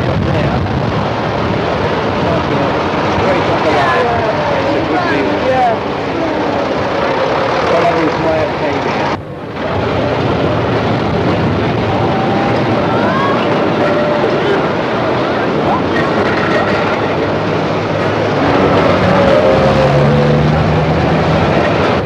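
Steady, noisy street ambience of traffic with indistinct voices mixed in, cut by a brief dropout about nine seconds in.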